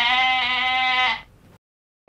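A single sheep bleat lasting a little over a second, one steady held call that fades out, dropped in as a comic sound effect.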